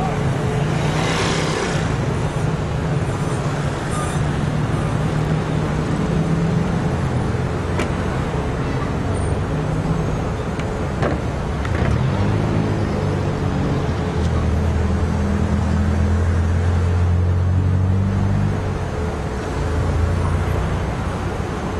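Road traffic: car engines running in slow street traffic, a steady mix of engine hum and road noise. A deeper, louder engine hum from a nearby vehicle comes in about halfway through and drops away shortly before the end.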